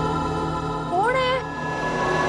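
Suspense background music with long held tones. About a second in comes one short cat meow that rises in pitch and then holds.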